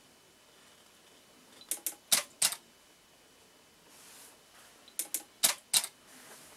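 Two rounds of sharp mechanical clicking, about three seconds apart, each four quick clicks within under a second with the last two loudest: the water drop valve's solenoid and the camera shutter firing together for a drop-collision shot.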